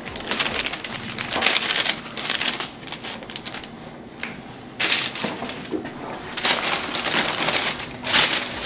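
Masking tape being pulled off the roll and laid down, with paper crinkling, as a car's door jamb is masked for paint. It comes in several noisy rasping bursts: a long one at the start, a short one about five seconds in, and another near the end.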